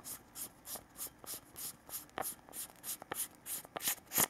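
Aluminium tail cap of a Sunwayman T26C flashlight being unscrewed by hand: a short dry rasp from the threads with each twist, about three or four a second, with a few light clicks among them.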